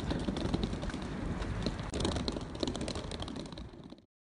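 Outdoor ambience with a low steady rumble and a rapid scatter of small clicks and ticks, fading and then cutting off suddenly at the end.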